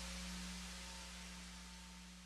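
Faint steady hiss with a low hum underneath, slowly fading out, like the dying tail of a held tone.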